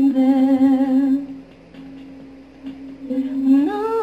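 A woman singing a slow ballad to her own acoustic guitar: she holds a long wavering note for about a second, it falls back to a quiet sustained tone, and her voice rises into the next phrase near the end.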